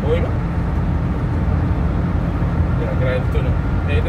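Steady low road and engine drone heard inside a car's cabin while driving through a road tunnel, with a faint voice murmuring now and then.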